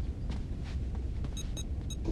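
Steady low starship-interior hum, with three short, high electronic beeps near the end as a door control panel is keyed.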